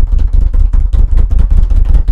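A loud, rapid drum roll with a heavy low rumble, sustained to build suspense before a winner is announced.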